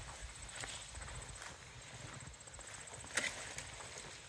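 Footsteps swishing and crunching through tall dry grass and weeds, with one sharp snap about three seconds in.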